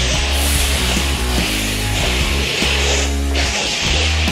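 Hand-held fire extinguisher spraying with a steady hiss that breaks off briefly about three seconds in and then resumes. Loud rock music plays underneath.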